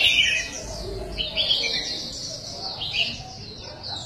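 Several caged red-whiskered bulbuls chirping and twittering at once in quick, overlapping high notes, loudest right at the start.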